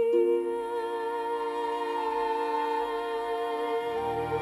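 Slow orchestral music: soft sustained chords under one long held note that wavers slightly, with the chord shifting just after the start.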